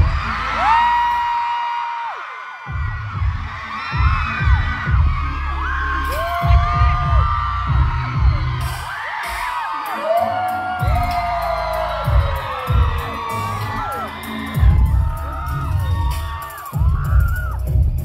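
Live band music, loud and close, with heavy low drum and bass hits, while crowd members scream and whoop over it in many overlapping high cries.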